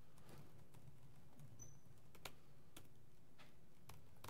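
Faint, irregular clicks of laptop keys being typed on, a few keystrokes a second at most, over a low steady room hum.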